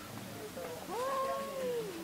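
Cat yowling in a standoff with a rival cat: one long, drawn-out threat call starting about a second in, rising, holding and then sliding down in pitch.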